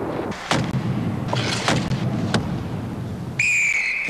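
Ice hockey game sound: a steady wash of arena crowd noise with several sharp knocks of sticks and bodies. Near the end a referee's whistle sounds one steady, shrill note, stopping play.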